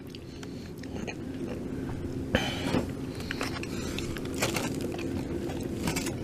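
A person chewing a mouthful of soft grilled cheese taco, with small wet mouth clicks. Underneath runs a steady low hum, and there is a short noisy burst about two and a half seconds in.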